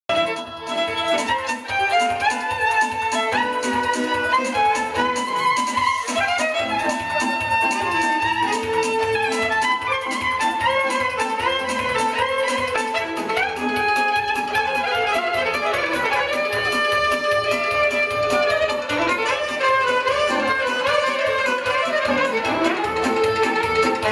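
Violin and saxophone playing a melody live over a steady low beat.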